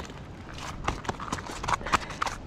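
A yellowfin bream flapping on a fish-measuring mat, its body and tail slapping the mat in a quick run of irregular taps.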